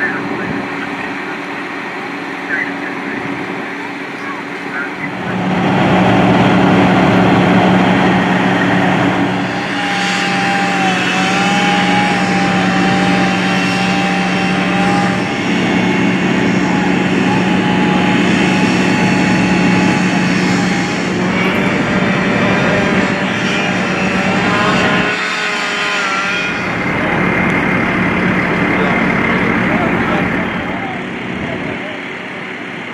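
Fire apparatus engines running hard, a loud steady drone with a low hum and held higher tones that comes up about five seconds in. Voices are heard over it.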